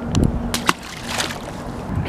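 A small opaleye tossed back into the water with a splash, followed by a few sharp clicks and knocks.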